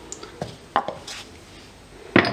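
A few light, sharp clicks and taps of a small ceramic salt pot and bowl being handled as a pinch of salt is sprinkled over sliced red onion.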